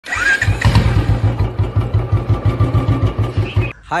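Motorcycle engine running with an even, rapid beat, about eight pulses a second, cutting off suddenly near the end.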